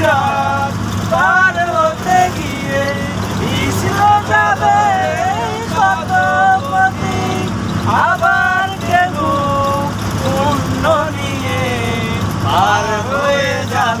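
A man singing a melodic song over the steady low drone of a bus engine, heard from inside the bus.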